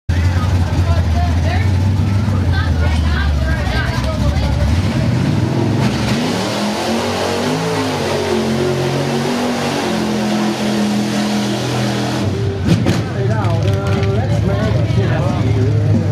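A pickup truck's engine revving under load as it churns through deep mud, its pitch climbing and shifting for several seconds in the middle. Before and after, a low steady engine drone runs under people's voices.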